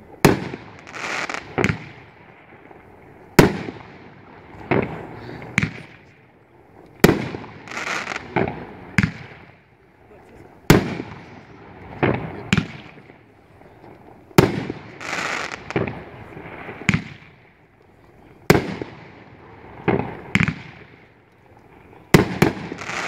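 World Class 'Future Warrior' 500-gram consumer firework cake firing one shot at a time. There are about a dozen sharp bangs, one to three seconds apart, and most are followed by a second or so of hissing crackle as the stars burst.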